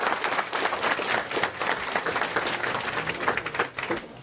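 Audience applauding, many hands clapping densely, dying down near the end.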